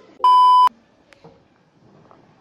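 A single steady electronic beep lasting about half a second, a pure mid-pitched tone far louder than everything around it, typical of a censor bleep added in editing.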